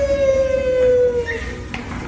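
A long, steady squeal, slowly falling in pitch, over a low rumble while sliding down an enclosed plastic tube slide; the squeal stops a little past halfway.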